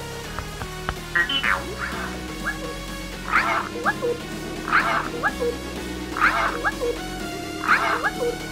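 BB-8 droid chirps and warbles played by the Sphero app, a bright sweeping call about every second and a half, over a steady low tone.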